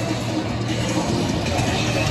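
Loud, continuous music with a sustained low note underneath.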